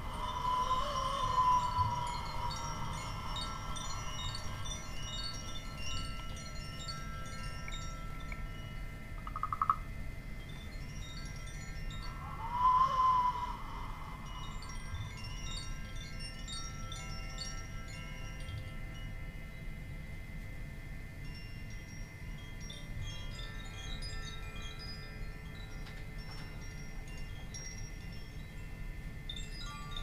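Bar chimes tinkling over steady ringing tones, while a small wooden whistle blown by mouth gives two gliding calls that rise and fall in pitch, one at the start and one about thirteen seconds in.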